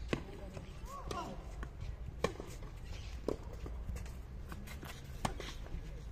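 Tennis ball struck by rackets and bouncing on clay during a rally: four sharp pops spaced one to two seconds apart.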